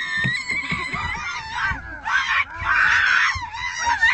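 People screaming in fright inside a car: long, high-pitched shrieks that rise and fall, loudest a little after the middle.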